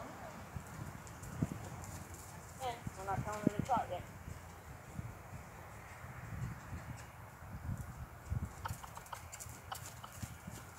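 Horse's hoofbeats on grass as it trots and canters around a lunge circle: soft, uneven low thuds. A brief human voice comes in about three seconds in.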